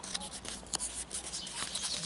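A stack of paper stickers rustling and rubbing as a thumb slides the top sticker off, with many small scattered ticks.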